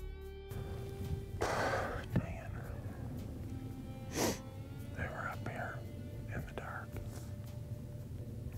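A man whispering outdoors, in short scattered phrases, with a sharp breath or sniff a little after four seconds in. Background music cuts off about half a second in.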